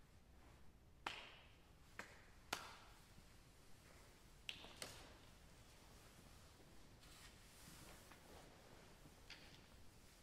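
Scattered single hand claps from individual audience members, about five separate claps in the first five seconds, each ringing briefly in a reverberant recital hall, followed by faint rustling as people sit down. Otherwise very quiet.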